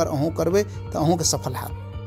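A man's voice speaking over steady background music.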